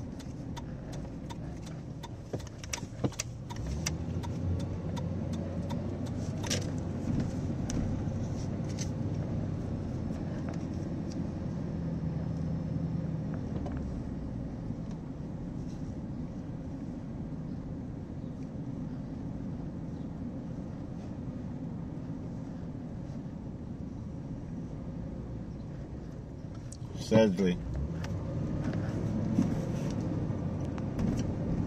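Inside a car's cabin, the engine and tyres run with a steady low hum as the car drives slowly along a city street. Light clicks and rattles come through in the first nine seconds or so, and a voice speaks briefly near the end.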